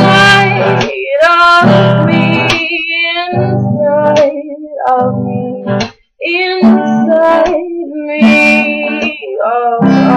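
A woman singing a slow folk song softly over plucked guitar chords.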